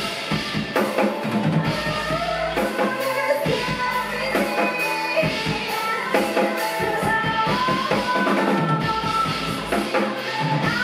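Live rock band playing a song, the Yamaha drum kit's bass drum and snare keeping a steady beat under sustained melodic lines.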